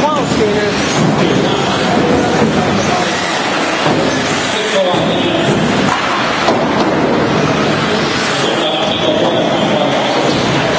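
Several 1/10-scale electric 4WD RC buggies racing on a hard floor: a continuous mix of motor whines that rise and fall in pitch as the cars speed up and slow down, with tyre noise, over indistinct chatter.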